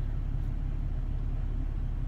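Steady low rumble inside a parked car's cabin.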